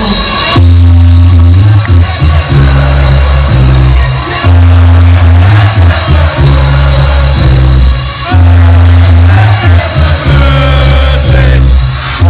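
Electronic dance music played loud over a nightclub sound system, with a heavy bass line in long notes that repeat about every two seconds.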